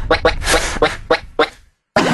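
A person laughing in quick, repeated bursts over a low rumble, fading out and then cutting off to silence shortly before the end.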